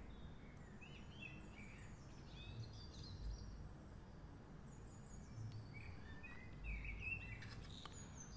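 Faint chirps of small birds in the background, short calls coming and going throughout, over a low steady rumble of room noise.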